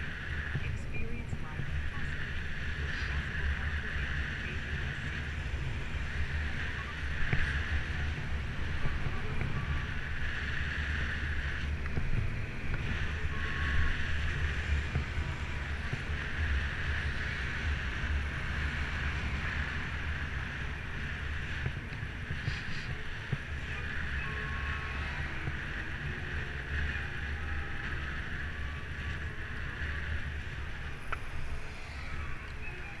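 Wind buffeting the microphone of a camera on a moving bicycle, a steady low rumble with tyre and road noise and a hiss that swells and fades.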